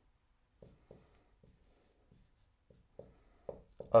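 Dry-erase marker writing on a whiteboard: a string of short, faint strokes with pauses between them.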